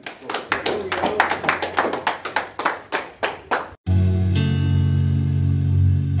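A group clapping in unison, a quick even beat of about five claps a second, for almost four seconds. It cuts off abruptly and music with a deep bass line and guitar takes over.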